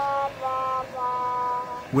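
A 'sad trombone' comedy sound effect: steady notes stepping down in small steps, the last one held for about a second.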